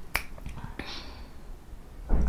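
A single sharp finger snap just after the start, followed by a fainter click.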